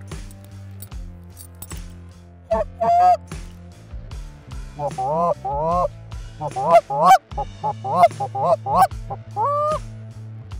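Canada geese honking: short rising honks that begin about two and a half seconds in and come thick and fast in the second half, the last one drawn out longer.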